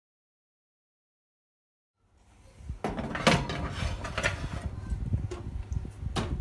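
Silent for about two seconds, then a low hum fades in with a run of sharp clacks and knocks: a metal cupcake tray being handled at an open oven, clattering against the oven racks.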